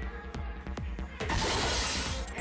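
Electronic dance music with a steady beat. About 1.3 s in, an electronic dart machine plays a loud, noisy hit sound effect lasting under a second as a dart scores a triple.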